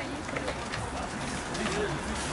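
Indistinct voices of people talking at a distance, over a steady low background hum.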